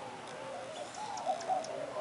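A jay close by making soft, quiet calls: a run of short, low notes that each rise and fall.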